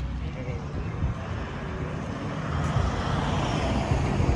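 Roadside traffic noise: a vehicle passing on the road, its tyre and engine noise growing over the last second and a half, over uneven low rumble from wind buffeting the microphone.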